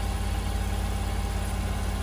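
Engine of a portable hydraulic sawmill idling steadily, a low even hum.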